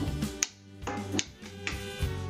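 A toddler hitting a small drum with a drumstick: a few sharp, uneven strikes over music with a steady beat.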